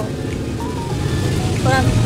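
Steady low rumble of a van's running engine heard from inside the cabin, with a brief voice near the end.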